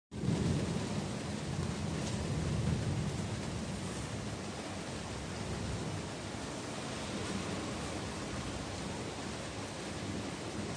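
Thunderstorm: steady rain hiss, with a low rumble of thunder in the first three seconds that then settles.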